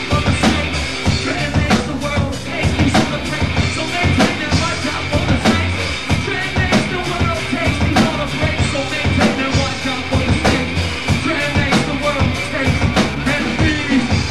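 A live band playing loud music: a busy drum-kit beat with regular kick and snare hits over bass and guitars, running without a break.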